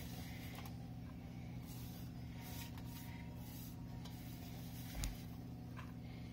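A steady low electrical hum with a few faint clicks, and one soft thump about five seconds in.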